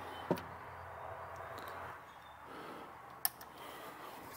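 Faint background hiss with a few small sharp clicks, one just after the start and one past the three-second mark, from alligator-clip test leads being clipped onto the wires of an LED landing light.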